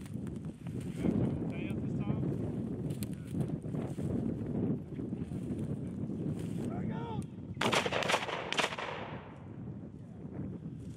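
Three shotgun shots in quick succession, fired at flushing quail, about eight seconds in, over steady low wind noise.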